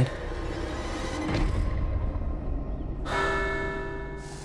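Eerie film-score sound design: a low rumbling drone that swells about a second and a half in. About three seconds in, a bell-like ringing tone of several steady pitches sets in suddenly and keeps ringing.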